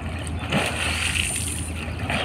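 Pool water sloshing and splashing as a person wades and sweeps his arms through it, swelling about half a second in, over a steady low hum.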